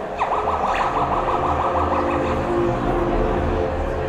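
Electronic soundscape over a theatre PA: a fast warbling, siren-like tone rises and falls about six times a second for about two seconds, over a steady low rumble.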